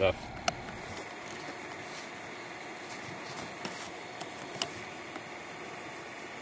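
A steady low hiss with a few faint clicks as a plastic retaining cap is worked out of the rubber shifter boot.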